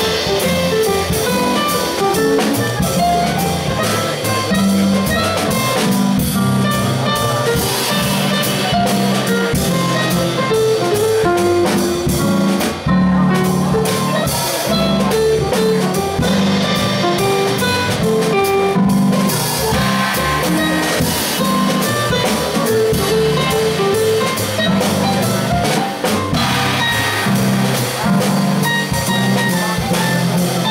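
Small jazz combo playing live: electric keyboard, upright bass and drum kit with cymbals, in a steady swing.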